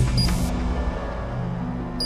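Tense film background score with low sustained notes. A short high hiss cuts in just after the start.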